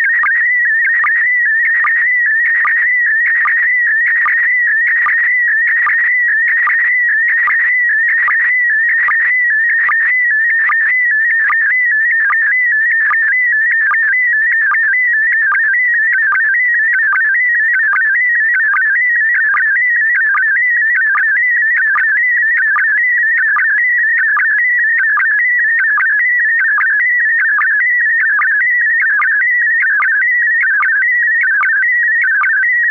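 Slow-scan television (SSTV) image transmission: a high warbling tone that wavers quickly in pitch, broken by a short lower blip about twice a second, one per scan line of the picture being sent.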